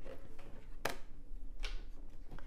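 Tarot cards being handled on a wooden table: one sharp click about a second in and a softer brushing stroke near the end.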